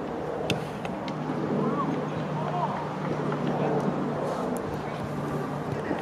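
Open-air football pitch sound: faint, distant shouts and calls from players over a steady low hum. A single sharp knock about half a second in fits the corner kick being struck.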